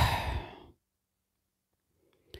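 A woman's short, breathy sigh close to the microphone, dying away within the first second.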